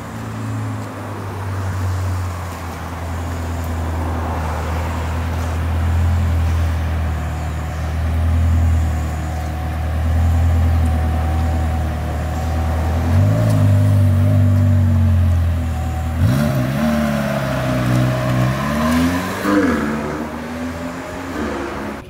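McLaren 720S twin-turbo V8 running at low revs as the car creeps forward, then rising in pitch three times in short pulls as it drives off.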